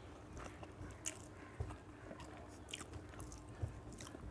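A person chewing a mouthful of rice and chicken curry, faint, with scattered small wet mouth clicks and a couple of sharper ones about one and a half and three and a half seconds in.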